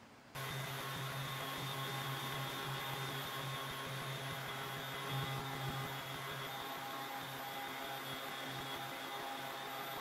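Random orbital sander with a soft buffing pad running steadily on a waxed cast iron table saw top, a constant motor hum; it starts abruptly just under half a second in.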